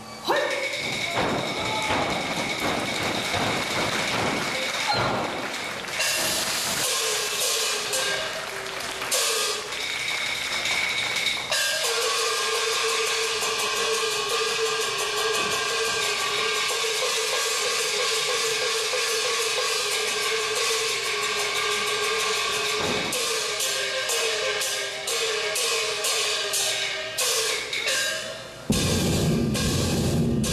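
Taiwanese opera (gezaixi) stage music accompanying a martial scene: percussion strikes under a pitched melody, with one long held note through the middle and a quick run of strikes near the end.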